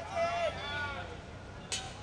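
Men shouting excitedly for about a second just after a cricket ball is hit towards the boundary, then a single sharp knock near the end.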